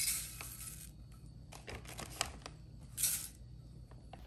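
Dry rolled oats poured from a stainless-steel measuring cup into a ceramic baking dish: a short rustling pour at the start and another about three seconds in, with light clicks in between.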